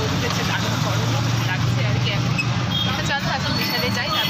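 Steady low rumble of a moving vehicle heard from inside its canvas-roofed passenger cabin, with a woman talking over it.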